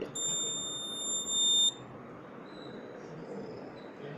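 Piezo buzzer on the health-monitor board sounding one steady, high-pitched beep that lasts about a second and a half, then cuts off.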